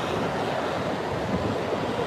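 Steady city-street background noise: an even hiss with no distinct events.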